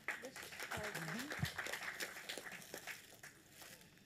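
Indistinct low voices under a dense patter of light clicks and rustle, which fades out toward the end.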